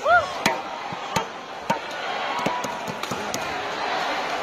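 Badminton rally: rackets hitting the shuttlecock with sharp cracks every half second to a second, the loudest near the start. Court shoes squeak on the court mat at the start, over a steady crowd murmur in a large hall.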